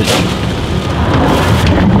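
A plastic bag of ice being handled and knocked, crackling and rustling, with a sharp knock right at the start, over a steady low rumble.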